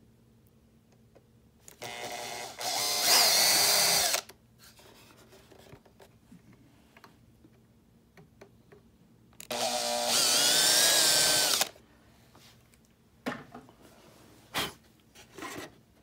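Small electric drill with a number 50 bit running in two bursts of about two seconds each, drilling the two mounting holes for the tailpipe tabs. A few light clicks and taps follow near the end.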